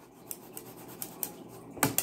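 A damp blue wad scrubbed back and forth against a plate: soft, irregular rubbing and scratching, with one sharper click near the end.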